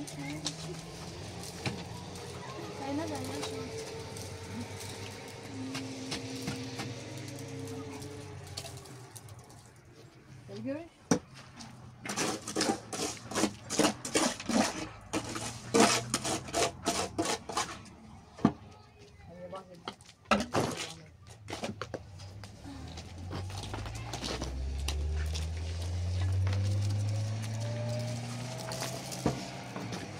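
Mortar being worked onto a concrete-block wall: a rapid run of scrapes and knocks from the mortar basin and trowel in the middle. Near the end a low engine-like sound rises steadily in pitch.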